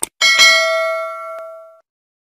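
A short click, then a notification-bell sound effect ringing once and fading out over about a second and a half.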